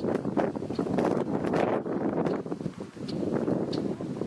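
Wind buffeting the microphone, a loud uneven rumble with irregular gusts that eases off at the very end.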